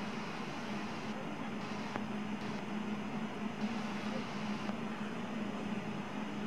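Steady low hum over an even hiss, with a faint high whine coming and going: the room tone of an indoor ice rink's air-handling and refrigeration plant.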